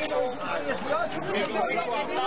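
Several people talking at once in Spanish, voices overlapping in unclear chatter.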